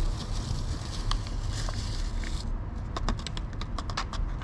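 Ready-made coffee powder poured from a plastic stick sachet into a foam cup, with light ticks and crinkles from the packet, denser near the end. A steady low hum runs underneath.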